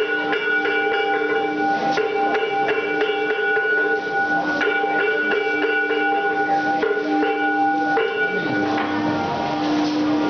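Bell-like ringing of several steady tones at once, struck afresh every two to three seconds, with quicker short knocks between the strikes.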